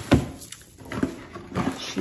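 A cardboard shoe box knocking and bumping as it is handled and lifted: a sharp knock just at the start, then a couple of softer knocks.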